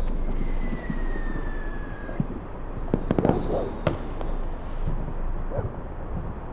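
Fireworks: a whistling firework whose tone falls slightly in pitch over about two seconds, followed by several sharp cracks and pops a second or so later.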